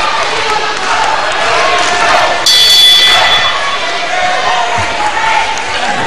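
Hall crowd noise with voices throughout. About two and a half seconds in, a ring bell sounds once, a sudden high ringing lasting about a second, signalling the end of a three-minute round.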